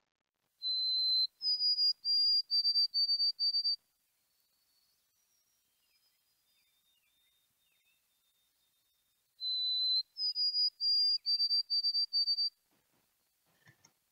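White-throated sparrow singing its whistled "poor Sam Peabody, Peabody, Peabody" song twice, about nine seconds apart. Each song opens with a held lower note, then steps up to a string of evenly repeated higher notes.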